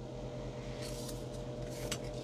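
Steady low electrical hum of room tone, with a few faint light clicks about a second in and near the end as painted plastic test swatches are set down on a cutting mat.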